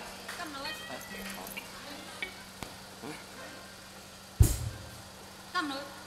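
Faint voices over a steady low hum. About four seconds in comes one sudden loud thump with a short low boom: the stage microphone on its stand being bumped, heard through the PA.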